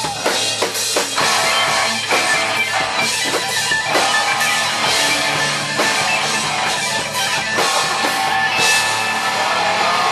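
Hardcore punk band playing live: distorted electric guitar with a pounding drum kit, loud and dense throughout.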